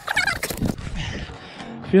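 Loose foam pit blocks rustling and squeaking against each other as someone wades through them, with a brief high, wavering voice-like sound at the start.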